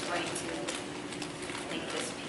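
Indistinct speech in a room, with irregular light clicks throughout.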